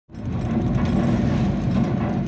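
Steady low rumble of a moving car heard from inside the cabin: engine and road noise while driving.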